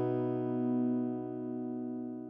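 A guitar chord ringing out and slowly fading.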